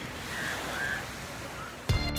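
Steady wash of surf against a rocky shore, heard as an even rushing noise. Music cuts in abruptly near the end.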